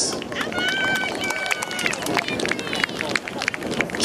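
Scattered hand-clapping from a small crowd, with a high-pitched voice calling out in a long held shout from about half a second in, and fainter calls later.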